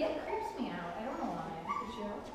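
A dog whining and yipping, over indistinct talking.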